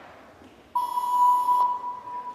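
A single steady electronic beep tone from the hall loudspeakers starts about three-quarters of a second in, holds for about a second and then fades away. It comes just before the routine music starts.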